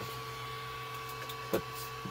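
Creality Ender 3D printer running: a steady hum from its fans and electronics with a faint fixed whine. A single light click comes about one and a half seconds in.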